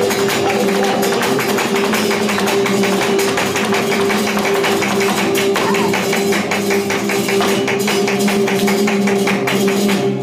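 Live flamenco seguiriyas: two flamenco guitars play steady chords under a fast, dense run of sharp percussive strokes from palmas (hand-clapping) and the dancer's footwork.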